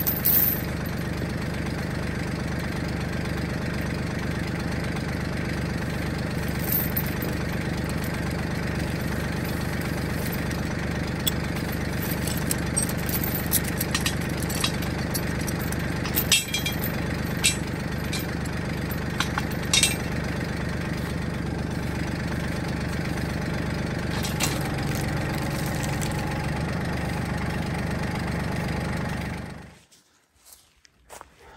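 Tractor engine idling steadily while a steel log chain clinks now and then as it is wrapped around a log and hooked to the hitch. The sound cuts off suddenly near the end.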